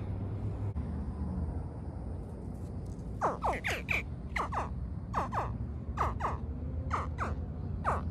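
Hatchling American alligator giving a rapid series of short, high-pitched chirping distress calls, about a dozen, starting about three seconds in while it is handled. A low, steady rumble lies under the calls.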